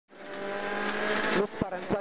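Ford Fiesta RS WRC rally car's 1.6-litre turbocharged four-cylinder engine running at high, steady revs, heard from inside the cabin, cutting back sharply about a second and a half in.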